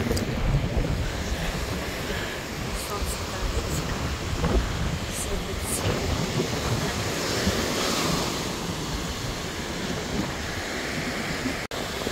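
Ocean surf breaking and washing up the beach, with wind buffeting the microphone in a steady low rumble.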